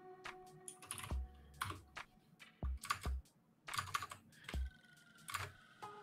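Typing on a computer keyboard: irregular clusters of keystrokes with short pauses between them.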